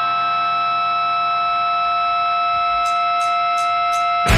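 A held, distorted electric guitar chord rings steadily as a post-hardcore song's intro. Near the end come four quick, evenly spaced ticks, a drummer counting the band in.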